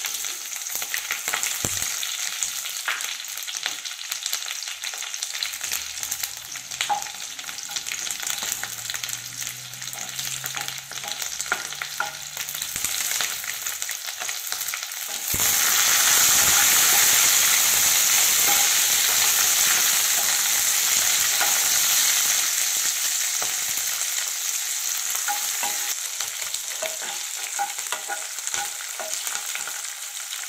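Green chillies sizzling as they fry in hot oil in a nonstick kadai. About halfway through the sizzle turns much louder as they are stirred with a spatula, then slowly eases off, with light spatula scrapes along the way.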